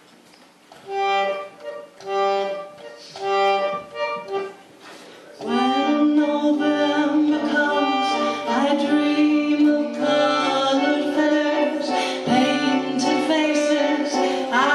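Harmonium playing a song's introduction: three short chords about a second apart, then from about five seconds in a run of held, swelling chords with a low bass line joining underneath.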